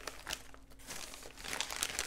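Paper wrapping crinkling and rustling as a small package is unwrapped by hand. The crackles come sparsely at first and grow denser and louder in the second half.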